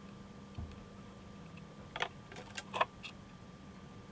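Faint handling noise of a small circuit board and wires being held and positioned for soldering: a few light clicks and taps, clustered about two to three seconds in, over a faint steady hum.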